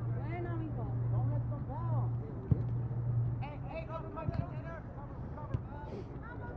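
Players shouting and calling out across a soccer field, with a few sharp thuds, the loudest about two and a half seconds in, over a low steady hum that fades a little past halfway.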